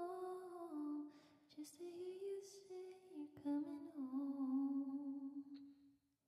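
A woman singing softly and unaccompanied, close to the microphone, in slow held notes that step downward, with short pauses between phrases. The voice stops just before the end.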